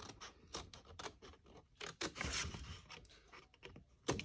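Scissors cutting through cardstock: a quick, uneven run of short, faint snips.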